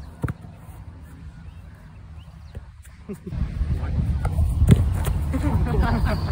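Quiet outdoor air with a sharp click just after the start, then from about three seconds in a steady low rumble of wind on the microphone, with a single sharp thump near five seconds and a voice late on.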